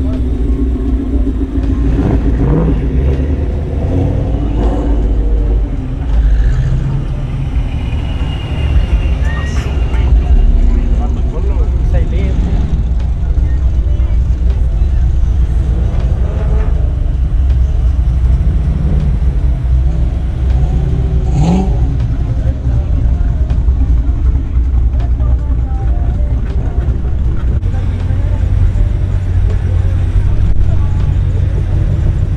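Mustang engines running as modified cars roll slowly past, a steady low rumble with a brief rev about two thirds of the way through. Voices of the crowd are heard underneath.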